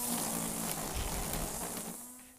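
Battery-powered string trimmer running with a steady whirring buzz, fading gradually toward the end.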